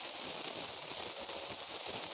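Steady background hiss: room tone and recording noise, with no distinct events.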